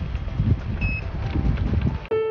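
Wind buffeting the microphone, with one short electronic beep from the treadmill speed control about a second in.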